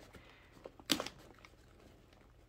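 Plastic bag rustling quietly as its tight knot is worked at by hand, with a few small crackles and one sharper crackle about a second in.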